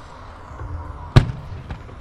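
A firework going off with one sharp, loud bang about a second in, and a fainter bang about half a second later.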